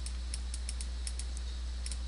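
A quick, irregular run of light computer mouse clicks, about ten in two seconds, over a steady low electrical hum.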